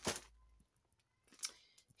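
Brief handling noises of a mailed parcel being fetched: a sharp tap right at the start, then near quiet, then a short rustle about a second and a half in.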